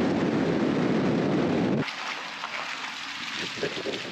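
Steady road and tyre noise of a vehicle driving on a highway, heard from inside the cab. About two seconds in it cuts to a fainter outdoor hiss.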